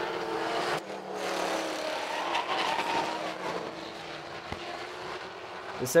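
A pack of stock race cars running at speed around an asphalt oval, with several engines together and their pitch slowly falling as they pass.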